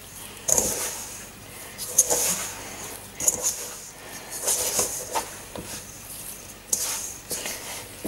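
Hands squeezing and mixing crumbly butter-and-flour dough with beaten egg in a stainless steel bowl: irregular squishing and rubbing strokes about once a second, with fingers brushing the metal bowl.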